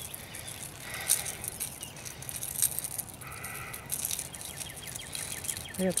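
Light clicks and rattles of a hard jerkbait lure and its treble hooks as it is worked free from a spotted bass's mouth by hand. A short two-tone call, plausibly a bird, sounds a little past three seconds in.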